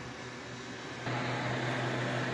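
Steady rushing of a running fan with a low hum under it, stepping up in level about a second in.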